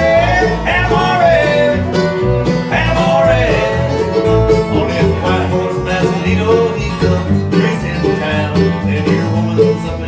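Bluegrass band playing an instrumental passage on fiddle, mandolin, acoustic guitar and upright bass, with no singing yet. Long sliding notes stand out in the first few seconds, and quicker, shorter notes follow.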